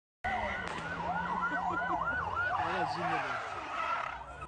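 Emergency-vehicle sirens yelping, two fast up-and-down sweeps running out of step and crossing each other, over a low steady hum.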